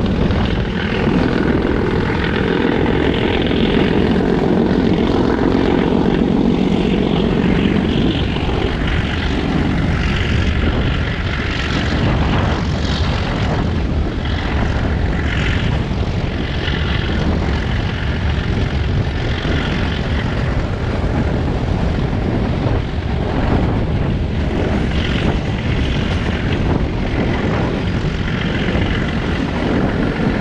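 Metre gauge train running, heard from an open coach window: a loud, steady rumble of wheels on rail and rushing wind, with the diesel locomotive ahead droning under power. The low drone is heaviest for the first eight seconds or so.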